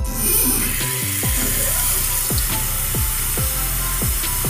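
Background music with a repeating pattern of falling tones, over a steady hiss of water running from a tap, starting right at the beginning, as the body scrub is rinsed off the hands.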